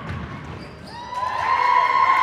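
A basketball bouncing on a hardwood gym floor, then spectators' voices rising and growing louder about a second in.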